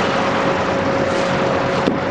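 Steady whir of wall-mounted electric fans running, with a faint steady hum through it. A single click near the end.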